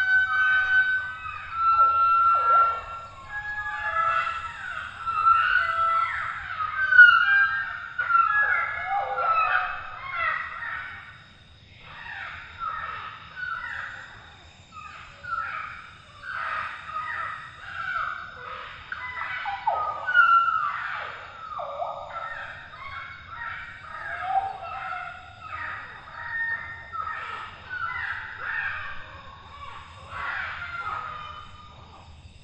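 A chorus of tropical forest birds: many overlapping whistled and chirping calls, several sliding quickly down in pitch. It is loudest about seven seconds in and again about twenty seconds in.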